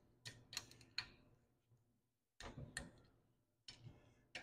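Faint, sharp metal clicks from a click-type torque wrench and socket on the gear reduction cover bolts of a Honda GX340 engine, in three small groups: a few in the first second, a pair about two and a half seconds in, and a pair near the end.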